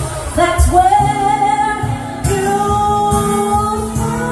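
Live band playing a pop song with a singer holding long, steady notes over a regular bass and drum beat.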